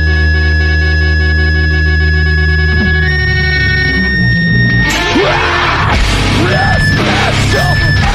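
Loud metalcore band recording: held, ringing distorted guitar chords that step up in pitch about three seconds in, then the full band crashes in with drums and guitars about five seconds in.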